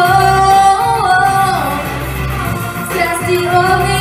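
Young female singer singing a pop song through a handheld microphone over a backing track with a steady bass. She holds a long note that slides down about a second and a half in, then starts a new phrase near the end.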